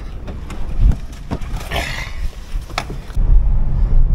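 Knocks and clicks of someone climbing into a car and pulling the door shut, with a brief high squeak near the middle. A little after three seconds in, the low steady rumble of the car driving on the road takes over and is the loudest part.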